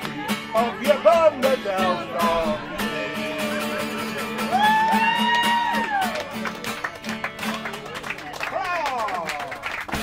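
Live folk music: a voice singing over acoustic guitar, with one long held high note about halfway through.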